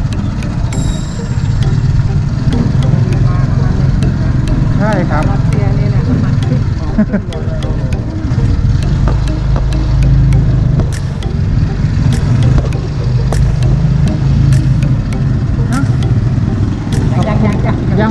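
Small motorcycle-type engine running steadily as the vehicle rides along, with a constant low rumble and road and wind noise.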